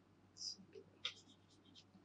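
Near silence broken by a brief faint scratch about half a second in and a few soft ticks, from a stylus on a writing tablet.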